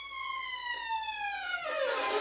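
Solo violin sliding one bowed note slowly downward in pitch, the slide quickening and falling further near the end.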